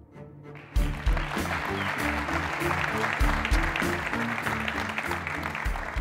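Studio audience applauding over music with a deep stepping bass line, both starting about a second in.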